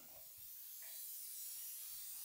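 Faint steady hiss of room tone and microphone noise, with no speech.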